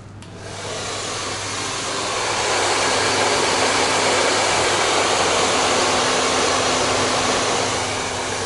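Handheld hair dryer blowing on freshly sprayed, wet hair. It comes on just after the start, grows louder over the first two seconds or so, then runs steadily.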